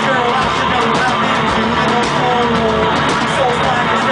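Live punk-rock duo playing loud: distorted electric guitar strummed hard over drums, with a man's voice singing over them.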